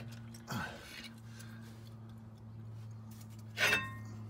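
A small screwdriver prying and scraping at the brake pads in the caliper, with a sharp metallic clink near the end, over a steady low hum.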